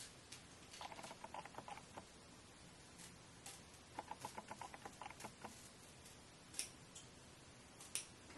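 Faint snipping of small scissors cutting through the wig's thin Swiss lace, in two runs of quick clicks about a second in and about four seconds in, with a few single snips between.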